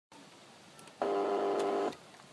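Electric doorbell buzzing while its button is held, a steady buzz of about a second that starts and stops abruptly.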